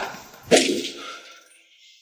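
A single punch hit sound effect about half a second in: one sharp crack that fades away over about a second.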